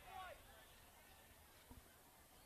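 Near silence: faint outdoor field ambience, with faint distant voices calling in the first moment.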